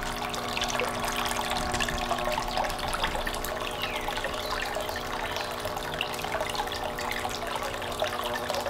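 Hang-on-back aquarium filter spilling a steady stream of water into a plastic tote, with a low steady hum underneath.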